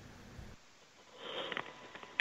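A person's short sniff through the nose, lasting about half a second, just after the middle, following a moment of near silence.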